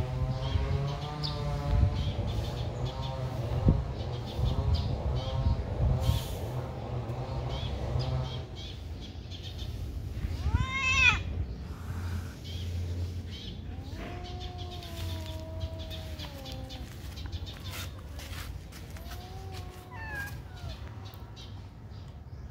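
Kittens meowing: a short rising-and-falling meow about ten seconds in, a long drawn-out meow a few seconds later, and a falling meow near the end. During the first eight seconds or so a wavering hum over a low drone runs underneath.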